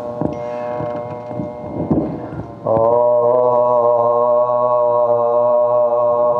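A man's voice chanting Urdu soz, a mourning elegy recited into a microphone. Softer, wavering phrases give way, about two and a half seconds in, to one long, loud held note.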